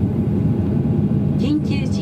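Steady low rumble with a constant hum inside the cabin of a Boeing 737-800 as it moves slowly on the ground, heard between lines of the cabin announcement.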